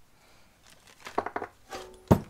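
A few sharp metallic clinks and knocks in the second half as a steel steering knuckle and ball joint are handled on a workbench vise, one with a brief ringing.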